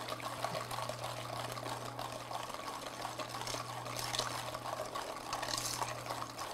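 Wire whisk beating thick, still-grainy chocolate brownie batter in a stainless steel mixing bowl: a steady, wet whisking sound.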